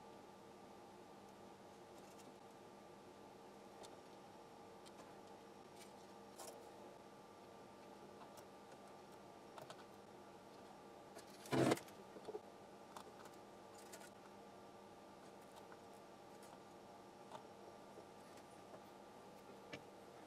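Quiet workbench room tone with a faint steady hum, a few light ticks from soldering work on a circuit board, and one brief louder clatter about halfway through.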